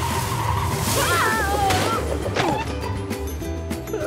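Cartoon sound effect of a dune buggy pulling away fast, a rush of engine and wheelspin noise that peaks and fades over the first two seconds, with a wavering squeal in the middle, over background music.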